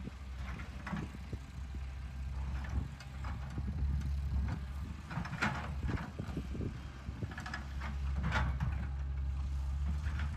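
L&T-Komatsu PC200 hydraulic excavator's diesel engine running steadily, swelling under load a few times as the bucket digs into a rocky earth bank. Short scrapes and rattles of rock and soil against the bucket come through at intervals.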